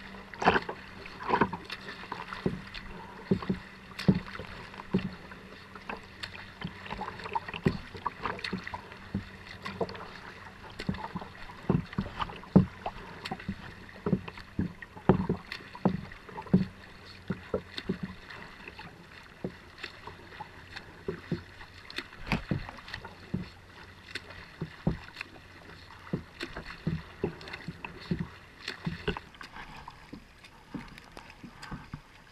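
Choppy water slapping and splashing against a kayak hull and a camera held just above the waterline, in many irregular sharp splashes, over a faint steady hum.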